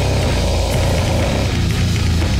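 Deathcore/death metal playing loud: heavily distorted electric guitars over fast drumming, dense and unbroken.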